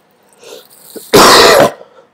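A person coughs once, loudly, a little over a second in, a short noisy burst of about half a second.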